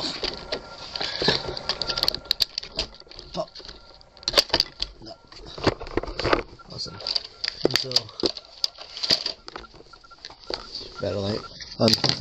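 Irregular clicks and rattles of hard plastic RC car parts being handled and fitted by hand, mixed with handling noise from a hand-held camera.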